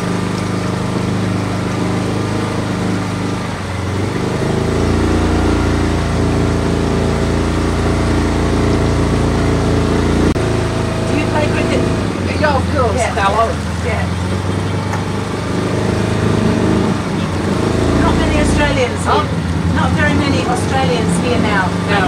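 Motorboat engine running steadily, a low hum whose tone shifts a few times. Indistinct voices talk over it in the second half.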